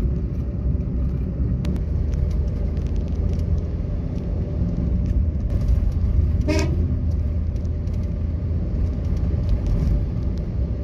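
Car driving on a city road: steady low rumble of engine and road noise, with one short vehicle horn toot about six and a half seconds in.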